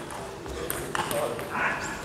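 Table tennis ball striking paddles and the table: a few short, sharp clicks during a rally.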